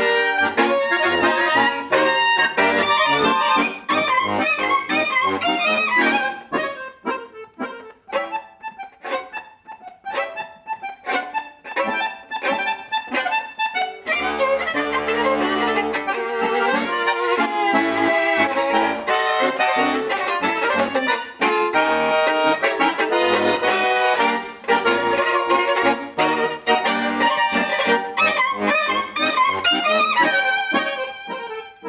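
Accordion and violin playing together, the accordion to the fore. In the middle comes a stretch of short, separated chords with gaps between them, then fuller, sustained playing with low bass notes.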